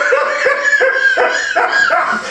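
A man laughing hard: a run of short, high-pitched bursts, about three a second.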